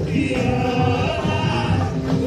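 Carnival parade music with a group of voices singing together, loud and steady.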